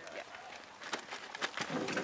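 A brief spoken word, then a few sharp clicks and knocks as fittings and hose are handled at a wellhead.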